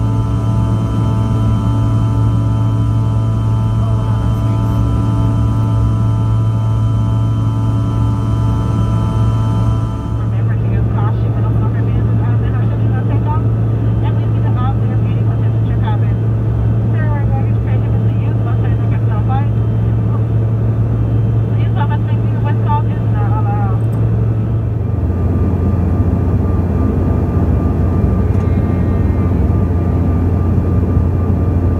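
Cabin noise of a regional jet with tail-mounted engines in flight: a loud, steady low drone with a set of steady whining engine tones over it. The sound changes abruptly about ten seconds in, when the tones drop away, and again about five seconds before the end, when the drone settles lower.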